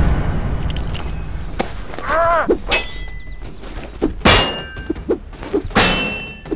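Steel swords clashing against each other and against round metal shields: several sharp clangs, each ringing on briefly, the loudest about three, four and six seconds in.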